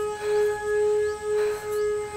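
Background film score: a single sustained wind-like note held steady, swelling and fading about twice a second.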